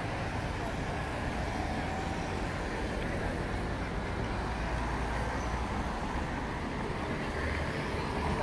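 City road traffic: cars and a motor scooter driving past at low speed, a steady low rumble of engines and tyres.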